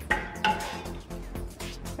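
A measuring cup clinking against a stainless steel saucepan as liquid Jell-O is scooped out, with two clinks in the first half second, over background music.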